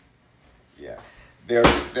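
Speech after a brief pause: near-quiet room sound, a faint vocal sound just before the middle, then talking resumes about a second and a half in.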